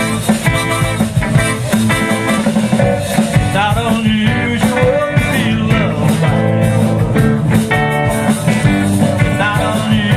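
Live rock band playing: electric guitars, bass guitar, drum kit and keyboard, with a lead line that bends in pitch around the middle.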